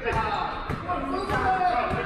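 A basketball being dribbled on a gym floor, each bounce echoing in the large hall, with players' voices calling out over it.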